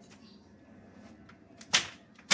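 Wooden handloom beater knocking once against the silk cloth to pack the weft: a single sharp knock near the end.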